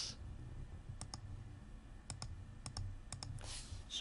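Computer mouse button clicking about six times, each click a quick press-and-release pair of ticks, as keys are pressed on an on-screen calculator.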